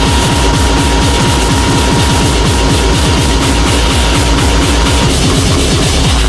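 Hardcore/speedcore electronic music: a fast, unbroken run of heavy kick drums with noisy, harsh highs above them. A steady high tone sounds over the beat and drops out about five seconds in.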